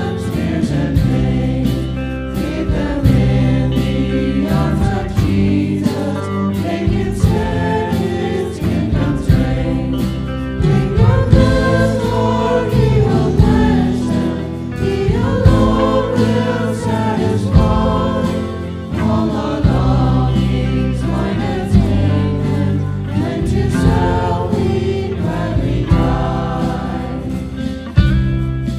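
A hymn sung by a group of voices with a small band accompanying, guitar among the instruments; the singing and playing go on without a break.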